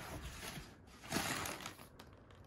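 Cardboard guitar carton scraping against the outer cardboard shipping box as it is slid and shifted by hand, with a brief louder scrape about a second in.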